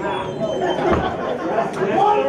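Indistinct chatter: several people talking over one another in a hall.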